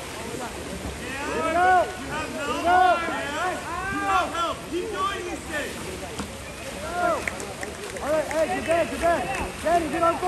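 Overlapping shouts and yells from spectators and coaches at a water polo game, each call rising and falling in pitch, over a steady wash of splashing water from the swimming players.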